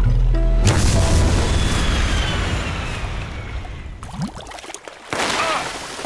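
Cartoon sound effect of water gushing out of a magic cup: a sudden loud rushing burst under music that fades over a few seconds, with a thin falling whistle, then a second rushing burst about five seconds in.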